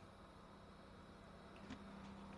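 Frezzer Pro 25L 12 V compressor cool box running, its compressor giving a faint, steady low hum through the side vent grille.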